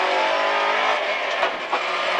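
Rally car's engine running hard at high revs, heard from inside the cabin: a steady pitch for about a second, then rougher.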